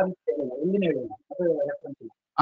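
A bird calling in low, wavering notes, twice, over the lecture's audio.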